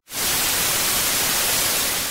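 TV static sound effect: a steady hiss of white noise that cuts in abruptly just after a brief dropout and eases off slightly near the end, used as a glitch transition.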